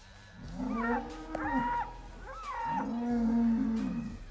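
Bull bellowing twice while bulls fight: two long, drawn-out calls, each rising at the start, held, then falling away.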